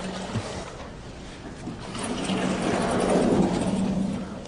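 Vertically sliding lecture-hall chalkboard panel being moved in its frame: a steady rolling noise with a low hum, swelling to its loudest about two seconds in.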